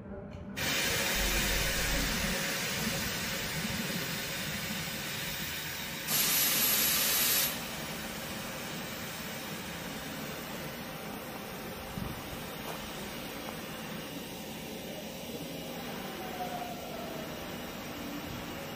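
Aerosol spray paint can hissing in one steady burst of about a second and a half near the middle, over a constant background hiss.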